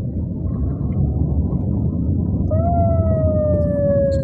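Steady low rumble of a car driving along a street, heard from inside the car. About halfway through, a loud long tone comes in and slowly falls in pitch.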